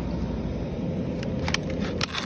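Steady low rumble of supermarket background noise, with a few short clicks in the second second.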